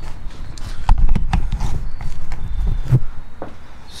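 Handheld camera being carried across a garage and set down: irregular knocks, bumps and handling rumble, with footsteps.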